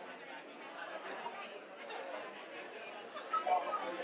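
Many people talking at once in a room, a steady hubbub of overlapping conversations with no single voice standing out, a little louder near the end.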